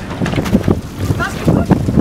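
Wind buffeting the microphone in a steady low rumble, with people's voices from a boat close by.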